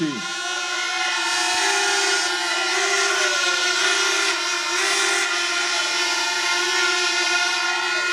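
Many horns sounding together in one long, unbroken blare, a held chord of several steady pitches.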